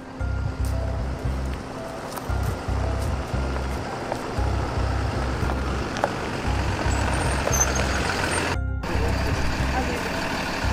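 A yellow school bus's engine running as the bus pulls up on a gravel road, with voices of a waiting group. A low rumble comes and goes throughout.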